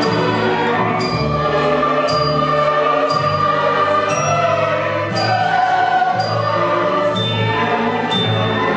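Symphony orchestra and choir performing classical music, with bass notes changing and a short high percussion stroke about once a second.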